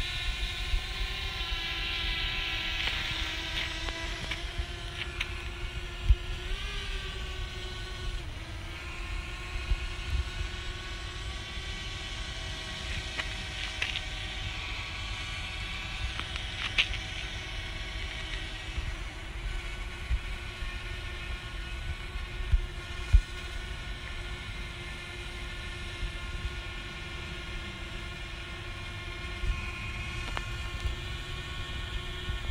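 Quadcopter drone's propeller motors whining in flight: a steady multi-tone hum that rises and falls in pitch about seven seconds in as the motors change speed. A low rumble runs underneath, with a few sharp knocks.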